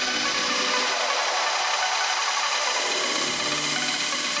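Electronic dance music from a melodic house and techno DJ mix at a breakdown. The bass and low end drop out about half a second in, leaving a steady hissing noise sweep over the top, and a low bass note comes back near the end.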